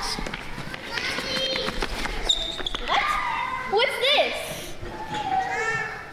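Children's voices calling and shouting, with thuds and knocks of feet on a stage floor.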